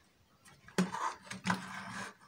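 Handling noise from a plastic extension socket and its wires being worked by hand: a few sharp plastic clicks and knocks with rustling, starting about half a second in, over a steady low hum.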